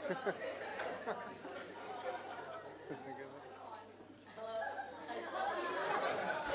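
Indistinct chatter of several young voices talking over one another.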